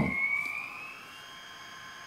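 Sound decoder of a Trix model Skoda 109E (class 380) electric locomotive playing the loco's sound through its small speaker: several steady high electronic tones with a whine that rises slowly in pitch, as the sound is switched on.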